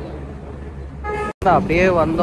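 Low, steady road-traffic rumble, then a vehicle horn sounds briefly about a second in and cuts off abruptly; a man's voice follows over the traffic noise.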